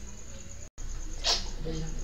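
Faint room hum and hiss between narrated sentences, cut to dead silence for an instant partway through, then a short breath drawn in just past halfway before the narrator's voice starts near the end.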